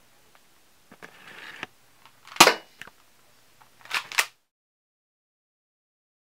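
Spring airsoft pistol shot: one sharp snap about two and a half seconds in, the loudest sound, with a lighter tap just after. Softer handling noises come before it, and a quick double click near four seconds.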